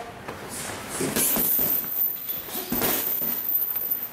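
Scattered light knocks and scuffs from boxers shadowboxing a one-two and side-step drill: gloves moving and shoes shuffling on a rubber gym floor, at an uneven pace.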